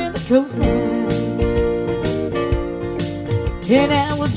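Live beach-music-style song played on keyboard and electric guitar, with held chords over a steady beat. Near the end a note slides up in pitch.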